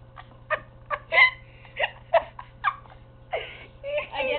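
A girl laughing in a string of short, separate bursts, irregularly spaced through the four seconds.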